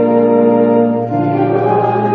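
A choir singing a sung blessing with organ accompaniment, holding a sustained chord that moves to a new chord about a second in.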